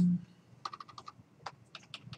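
Computer keyboard being typed on: a quick, uneven run of about a dozen key clicks starting about half a second in, as lines are inserted in a text file. A man's word trails off at the very start.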